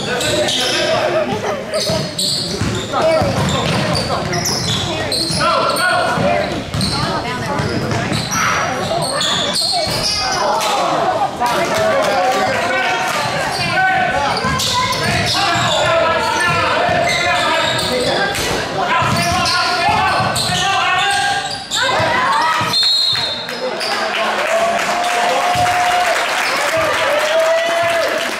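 Basketball game sounds in a gym: the ball bouncing on the hardwood court with many short knocks, amid indistinct voices of players and spectators, all echoing in the large hall.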